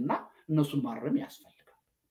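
A man's voice speaking in short phrases, which stops about a second and a half in, leaving a brief pause.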